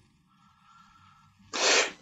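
A gap of near silence, then about one and a half seconds in a short, sharp intake of breath just before speech begins.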